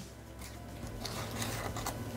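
Hands folding shortcrust pastry edges over a filled tart, with several soft rustles of dough and baking paper being pressed and rubbed.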